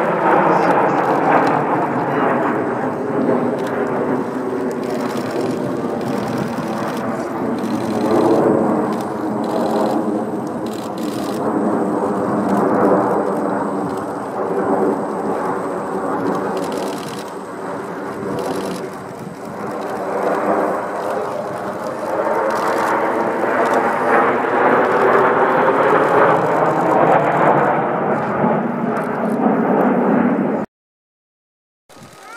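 Jet noise from the Blue Impulse formation of Kawasaki T-4 trainers flying overhead, a continuous rushing sound with sweeping rises and falls in pitch as the aircraft pass. It eases off about two-thirds of the way through, then swells loudest near the end.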